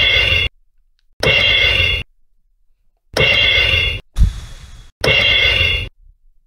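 Toy electronic drum kit's crash cymbal pad pressed repeatedly, each press setting off a short electronic cymbal sound that stops abruptly after less than a second, roughly every two seconds. Just after four seconds in there is one different, hissier sound with a low thump.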